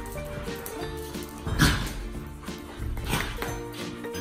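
A dog gives two short play barks, about a second and a half apart, while wrestling with another dog. Light, cheerful background music plays throughout.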